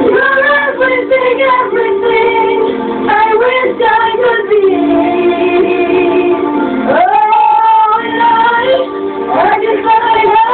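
Two 13-year-old boys singing in unbroken voices, with held notes and pitch glides, one sharp rise about seven seconds in. The sound is thin and cut off above the middle range, as a home video heard through a TV speaker and re-recorded.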